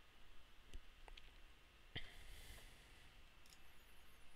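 Near silence: room tone with a few faint, short clicks, the clearest about two seconds in.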